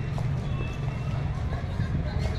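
Outdoor ambience of people milling about: indistinct voices of visitors and footsteps, over a steady low rumble on the phone's microphone.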